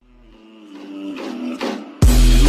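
Intro sound effect: a pitched hum that swells up from silence, growing steadily louder, with a couple of quick whooshing sweeps about a second and a half in.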